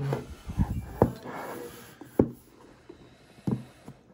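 Cardboard retail box being handled: rustling as the inner box comes out of its paper sleeve and is turned, with a few short knocks and taps, the loudest about a second in and just after two seconds.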